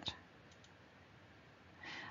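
Near silence: room tone, with a faint click about half a second in and a breath drawn in near the end.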